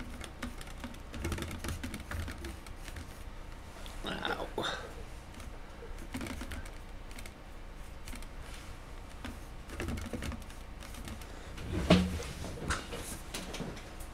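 Scattered light clicks and taps, with a short murmur about four seconds in and a sharper knock near twelve seconds.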